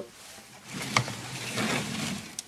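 Sheet-metal air terminal unit and its copper-and-aluminium radiator coil being handled and turned over, a scraping, rustling clatter of metal with a sharp click about a second in.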